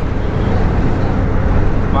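Steady low rumble of road and engine noise inside the cabin of a van driving at highway speed.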